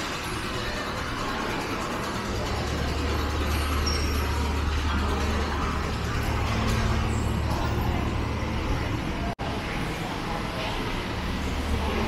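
Steady low engine rumble under a dense background hubbub, cutting out for an instant about nine seconds in.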